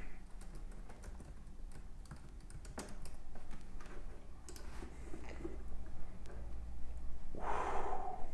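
Quiet room tone with a low hum and scattered small clicks, then a short breathy exhale near the end.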